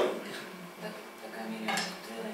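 A short, sharp clink or tap on a desk about three-quarters of the way through a quiet stretch, over faint voice in the room.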